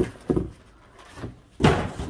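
Cardboard shipping boxes being handled and set down: a few dull thumps, the loudest about a second and a half in.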